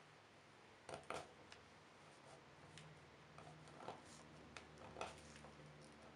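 Faint, irregular scraping strokes of a small hand tool (screwdriver tip or cutter blade) lifting softened, chemically stripped red paint off a wooden revolver grip panel, about eight short scrapes in all, over a faint low steady hum.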